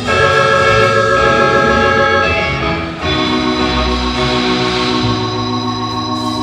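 A live band playing a song. Sustained chords ring out and change about three seconds in.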